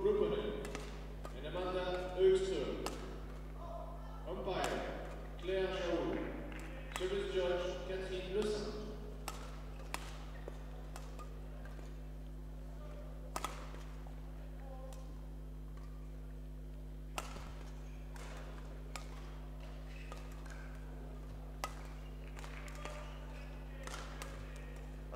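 Indistinct voices in a large sports hall for the first nine seconds or so, over a steady low hum. Then the hum goes on alone with a few sharp, isolated taps spread through the rest.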